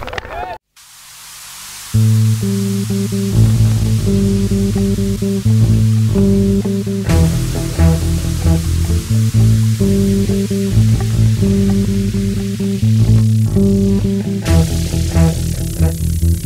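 A rock song cuts off under a second in, followed by a brief faint hiss. About two seconds in, an early-1980s band recording starts its instrumental intro, with bass guitar and guitar playing a repeating pattern.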